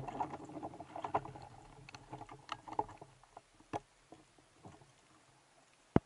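Underwater noise heard through a diving camera: the fading rush left by a loud bang just before, then irregular sharp clicks and knocks that grow sparser.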